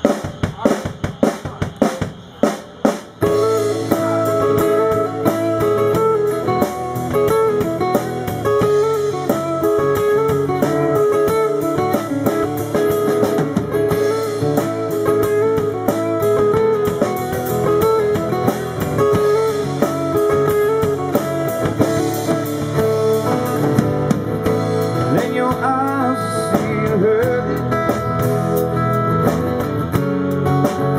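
Live band of acoustic guitar, electric guitar and drum kit playing the instrumental intro of a song: a few sharp, separate hits over the first three seconds, then the full band playing steadily.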